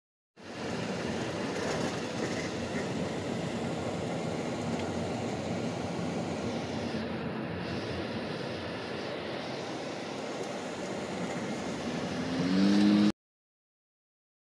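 Steady road and engine noise heard from inside a moving car. Near the end a louder tone rises briefly and holds, and then the sound cuts off suddenly.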